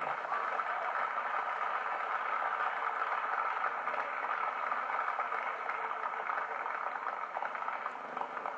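Audience applause in an arena: steady, dense clapping.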